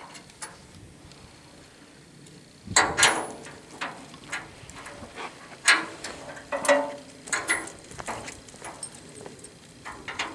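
Irregular metallic clanks and clicks, starting about three seconds in, from ratchet tie-down straps and their hooks being handled and tightened on a steel-framed trailer.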